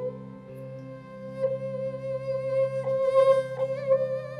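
Live ghazal accompaniment: a slow, held melody with vibrato on a sarangi over a sustained keyboard chord.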